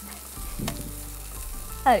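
Diced vegetables and chicken sizzling in a frying pan as they are stirred with a wooden spatula, with one light knock about two-thirds of a second in.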